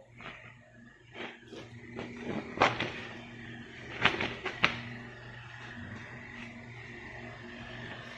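Handling noise from a paper instruction manual: a few short taps and rustles, the sharpest near three and four and a half seconds in, over a steady low hum.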